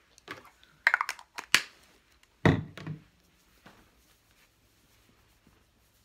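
A few quick sniffs about a second in, someone smelling freshly sprayed perfume, then a dull thump along with a single spoken word.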